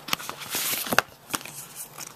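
Hands handling the iPhone box's paper packaging: a short rustle and several light clicks and taps, the sharpest about a second in.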